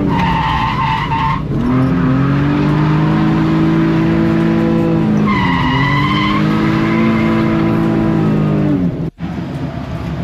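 Nissan 350Z drifting, heard from inside the cabin: the engine is held at high revs and dips briefly twice, and each dip is followed by about a second of tyre squeal. Near the end the sound cuts out suddenly and a quieter car engine takes over.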